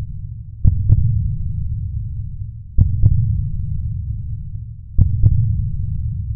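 Cinematic heartbeat-style sound effect: deep double thumps, each followed by a low rumbling hum that fades away, repeating three times about two seconds apart.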